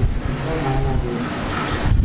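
A motor vehicle passing: a steady rushing noise with a faint low engine hum, about as loud as the speech around it.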